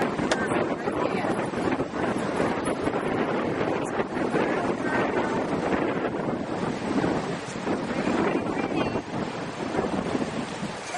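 Steady wind buffeting the camcorder microphone, with ocean surf rolling underneath.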